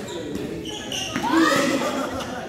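Badminton players' short calls and footsteps on the court floor of a sports hall, with the echo of the large hall.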